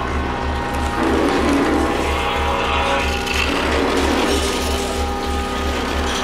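Free-improvised live electroacoustic music: a low bass throb pulsing at a steady rhythm under a dense layer of held electronic tones and grinding, ratchet-like noise textures.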